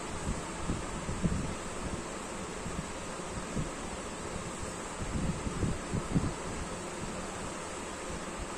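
Steady room noise and hiss with a few soft low bumps and rustles scattered through, the loudest a little after six seconds in.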